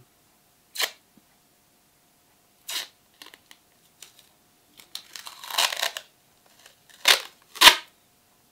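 Masking tape being picked at and torn from its roll: a few short sharp rips, a longer rough peel about five seconds in, and two loud rips near the end, the last the loudest.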